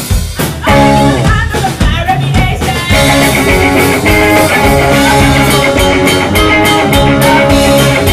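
Live rock band playing electric guitars and a drum kit, with a woman singing into a microphone. The playing thins out briefly at the very start before the full band comes back in.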